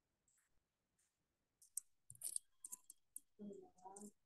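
Near silence with faint, scattered clicks and ticks, and a brief faint murmur of a voice near the end.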